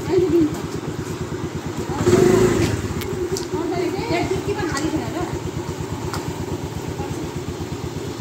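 A small motorbike engine idling steadily close by, a fast even low putter, while people talk over it.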